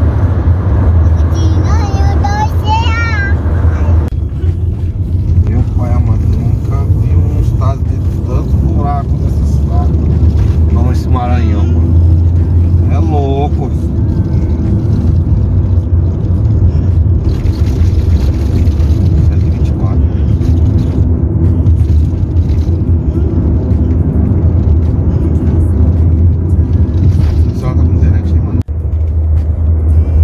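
Steady low drone of a car driving at road speed, heard from inside the cabin, with a brief cut in the sound near the end. A voice, singing or speaking, sounds over it in the first half.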